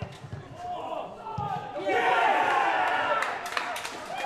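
Men's voices shouting across a football pitch, with a dull ball strike about a second and a half in, then loud shouts of excitement from about two seconds in as the shot reaches the goal, and a few sharp claps near the end.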